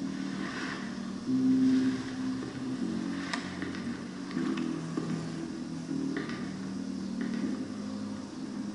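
Movie soundtrack played back from a TV: low, sustained score notes shifting in pitch, louder for a moment just over a second in, with a single sharp click about three seconds in.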